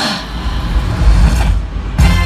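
A loud, deep bass rumble over the stadium sound system, with short bursts of higher noise at the start and again about one and a half seconds in.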